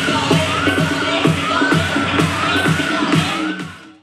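Electronic dance music with a steady beat and a repeating synth figure, fading out over the last second.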